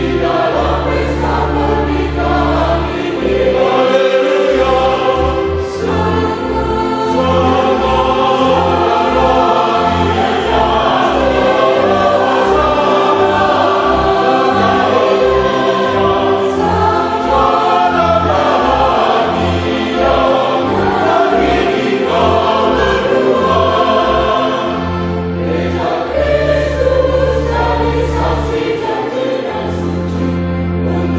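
Choir singing with instrumental accompaniment. The bass holds long low notes near the start and near the end, and moves in quick short notes through the middle.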